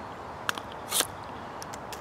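Helle Temagami knife shaving feather-stick curls off a dry wooden stick: two short scraping strokes about half a second apart, then a few faint ticks.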